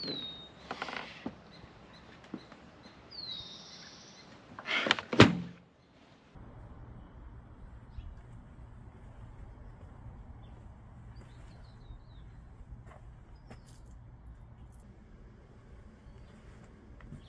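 Small birds chirping, with a single loud, sharp thump about five seconds in. The background then changes to a steady low hum with a few faint chirps.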